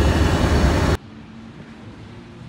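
A loud, steady rushing roar with a deep rumble underneath. It cuts off abruptly about a second in, leaving only a faint low hum.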